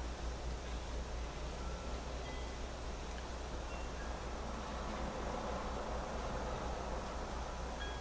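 Quiet, steady background noise with a low hum, and a few faint, brief, high chime-like tones scattered through it.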